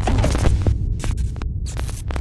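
Deep electronic hum with crackling, glitchy clicks over it: sound design for an animated holographic logo intro.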